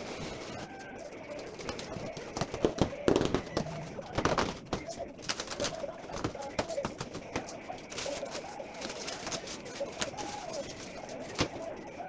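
Cardboard box and foam packing being pulled open and handled: irregular rustling, scraping and knocks, loudest a few seconds in. A bird coos in the background.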